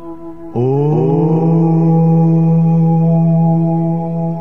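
Meditation music with a steady drone of held tones. About half a second in, a low chanting voice comes in, slides up in pitch and settles into a long held note.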